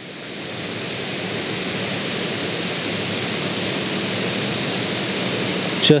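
Rain Bird 5000 gear-driven rotor sprinkler running, the steady hiss of its water stream swelling over the first second or so and then holding, as the head turns toward its right stop after its arc has been increased.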